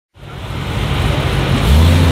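V8 performance car engine idling, fading in, with a brief rev about one and a half seconds in.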